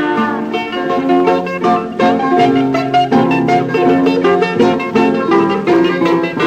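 Rebetiko instrumental break: a bouzouki plays a quick run of plucked notes over strummed guitar chords, as the singer's last held note fades at the very start.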